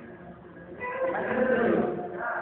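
A person's voice holding a wavering, bleat-like note for about a second, starting about a second in.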